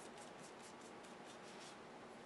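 Faint, quick, repeated strokes of a paintbrush on watercolour paper as colour is gently dabbed into small patches.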